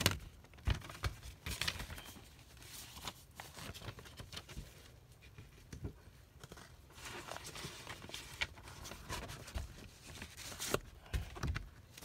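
A paper record sleeve and a mock vinyl record from a stamp folio being handled as the record is worked back into its sleeve: irregular paper rustling and scraping with light knocks and taps.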